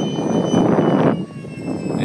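Radio-controlled electric ducted-fan jet (E-flite Habu) making a pass: a rushing fan whine that builds, rises in pitch and peaks about a second in, then falls away sharply as it goes by.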